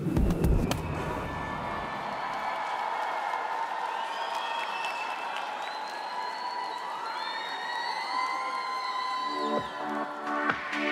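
Large arena crowd cheering and screaming, a steady roar with long high shouts riding over it. A short stretch of music fades in the first two seconds, and a pop song's beat kicks in just before the end.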